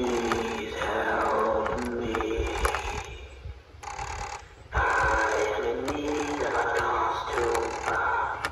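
Life-size Gemmy animatronic prop playing one of its talking phrases: the gear motor whirs and clicks as the jaw and head move, under a deep recorded voice from its speaker. It runs in two stretches with a short pause a little past the middle. Wind rumbles on the microphone throughout.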